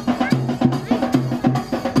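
Processional band drums, a side drum and a bass drum, beating a quick, even rhythm.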